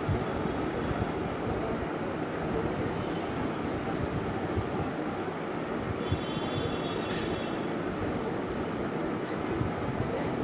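A steady, low rumbling background noise with no clear events in it. A faint high whine shows about six to seven and a half seconds in.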